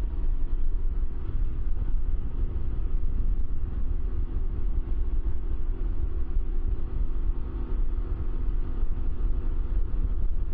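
Can-Am Ryker three-wheeler cruising at about 50, its engine a steady hum under a heavy, gusting wind rumble on the microphone.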